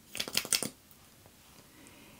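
A quick run of small clicks and rustles in the first half-second or so from handling the e.l.f. clear brow gel's tube and wand.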